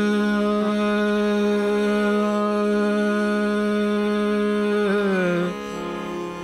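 A male Hindustani classical voice holding one long steady note in an opening phrase of raag Shankara. Near the end the note slides down and stops, leaving a quieter sustained drone.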